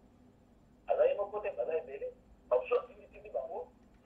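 Speech heard over a telephone line, thin and cut off in the highs, starting about a second in.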